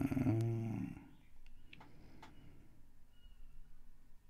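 A man's drawn-out, hummed 'umm' in the first second, then a few faint taps of a fingertip on an iPad touchscreen.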